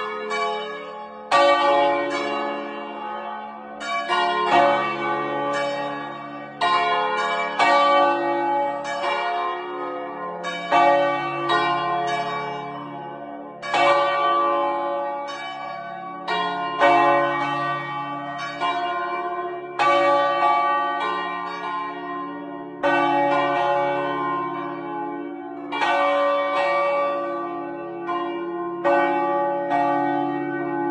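The four largest bronze bells of a seven-bell Crespi peal from 1753, tuned D-flat, F, A-flat and the octave D-flat, swung full circle by hand. Their clappers strike at uneven intervals, one every second or two, and each strike leaves a long, slowly fading ring that overlaps the next.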